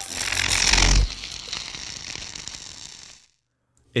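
Sound-design transition effect: a rough noise swell that builds for about a second into a deep boom, then a grainy noise tail that fades and stops about three seconds in.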